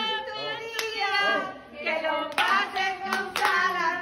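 A small group singing a birthday song in Spanish, with scattered hand claps cutting through the singing.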